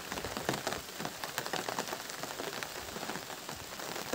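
Steady rain falling, a dense patter of individual drops over a constant hiss.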